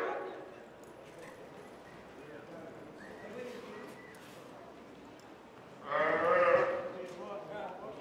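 A roped calf bawls once, loudly, about six seconds in, while it is held down on its side and tied. Quieter arena sounds come before the call.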